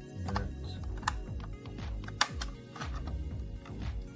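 A clear plastic blister box being handled and opened, giving several sharp plastic clicks and snaps, the loudest about one and two seconds in. Background music with a steady bass beat plays underneath.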